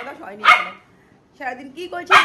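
A dog barking in sharp, quickly fading barks: one at the very start and another about half a second in, then a short pause.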